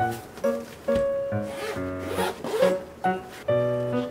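Zipper of a padded soft-shell carrying case rasping as the case is unzipped and opened, over background music with a steady beat.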